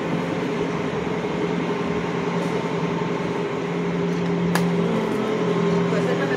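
Steady mechanical hum with two held tones over a bed of street noise, and a single sharp click about four and a half seconds in.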